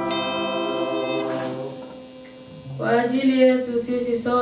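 Church music: a held instrumental chord rings on and fades away over the first two seconds. Then, about three seconds in, a woman's voice starts singing, amplified through the lectern microphone.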